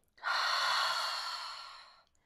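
A woman's long audible breath out, starting a moment in and trailing off gradually over nearly two seconds.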